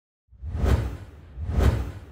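Two whoosh sound effects with a deep low rumble, each swelling and fading, about a second apart, from an animated logo intro.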